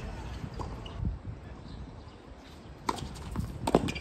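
A few sharp knocks on an outdoor hard tennis court in the last second or so, over low steady background noise.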